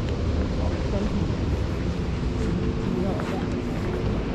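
Steady wind noise rumbling on the microphone, with people talking faintly in the background.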